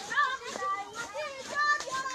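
A group of young female voices calling and singing loosely over one another, several at once in short overlapping phrases.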